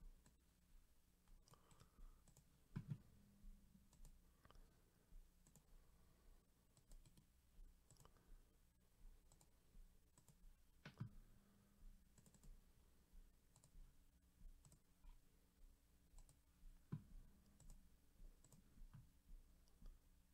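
Near silence: faint, irregular clicks of a computer mouse and keyboard, with a few slightly louder knocks, over a faint low hum.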